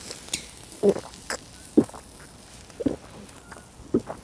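A man gulping down a shot of soju close to his clothing microphone: a few short swallowing sounds about a second apart.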